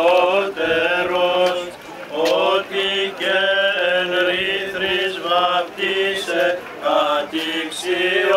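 Greek Orthodox Byzantine chant: a single melismatic melody line with long held notes that glide between pitches, over a steady low held note.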